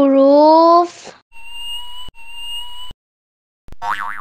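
A voice draws out the syllable "hu" for about the first second. Then come two steady electronic beeps, each just under a second long with a short break between them. Near the end there is a brief warbling sound effect.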